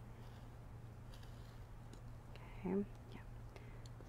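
Faint scratching of an Olfa SAC-1 craft knife blade dragged through minky plush fabric along a ruler, over a steady low hum. The blade feels due for changing.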